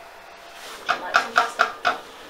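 A high-pitched voice in five quick, evenly spaced bursts, about five a second, in the second half.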